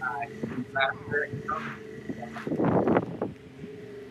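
Truck engine running steadily while backing a trailer-mounted housing unit, with short bits of people's voices over it and a brief rush of noise about two and a half seconds in.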